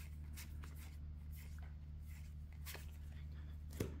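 Trading cards from a freshly opened Star Wars: Unlimited pack being handled and flicked through by hand: scattered faint, soft clicks and slides of card on card over a steady low hum.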